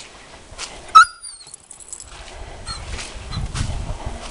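A standard poodle gives one short, high-pitched whine about a second in. A low rumbling noise follows in the second half.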